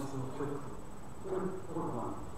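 A man speaking in two short phrases with a brief pause between them.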